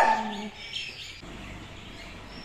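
A person's short laugh at the very start, fading within half a second, followed by quiet ambience with faint, thin bird chirps.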